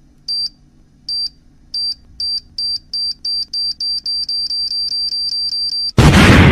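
High-pitched electronic countdown beeps, like a bomb timer, starting nearly a second apart and speeding up steadily to several a second. At the very end the firecracker's bang begins.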